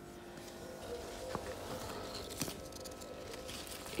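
Faint rustling of citrus leaves and branches being handled while fruit is picked, with a couple of small clicks, over a low steady hum.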